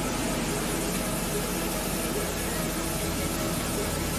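Cloud-brightening spray cannon blasting a plume of fine water droplets on compressed air: a steady rushing hiss with a low machine hum beneath.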